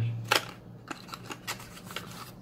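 Cardboard packaging being handled by hand: a few light, sharp clicks and taps spread over the two seconds.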